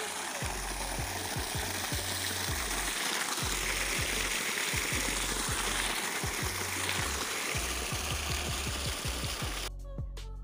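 Water gushing from an irrigation pump's outlet pipe and splashing onto a flooded paddy field: a steady, loud rushing, with background music underneath. The rushing cuts off abruptly near the end.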